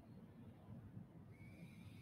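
Near silence: room tone with a faint low hum, and a faint thin high tone coming in a little past halfway.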